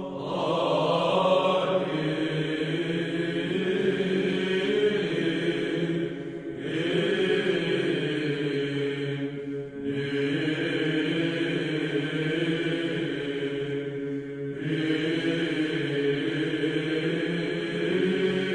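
Male Byzantine choir chanting a koinonikon in Greek over a steady held ison drone. Three brief breaks fall between phrases.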